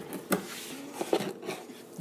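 Cardboard packaging being handled as a drone box is opened: a few soft knocks and scrapes of the flaps and insert.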